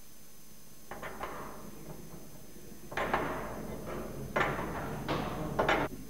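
A series of metallic knocks and clanks from a hydraulic hose and its metal end fitting being handled, starting about a second in and loudest in a cluster of sharp hits between about three and six seconds.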